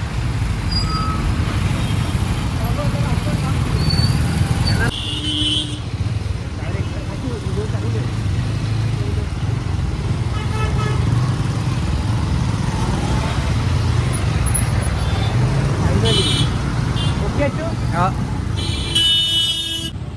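Road traffic in a jam of lorries and motorcycles: engines running steadily, with short vehicle horn toots and a longer horn blast near the end.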